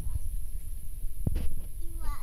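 Low rumble on a handheld phone microphone, with a single knock about a second and a half in.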